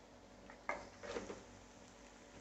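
Near silence: quiet room tone, broken about two-thirds of a second in by a couple of faint, short knocks.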